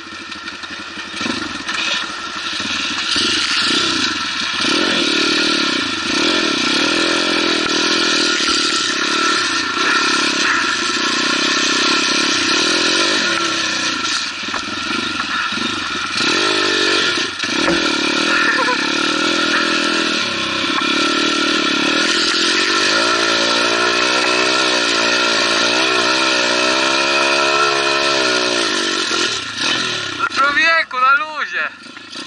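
Off-road dirt bike engine running hard as the bike is ridden over sand and dirt tracks. Its pitch rises and falls with the throttle, with brief dips in the middle where the throttle is rolled off, and a long steady climb in revs in the last third.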